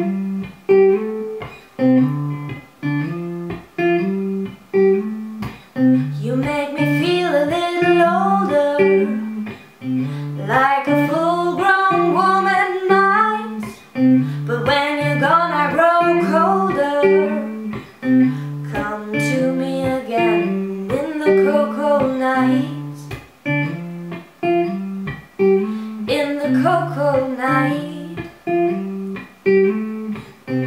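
Acoustic guitar playing a repeating picked accompaniment, with a woman singing over it in several separate phrases.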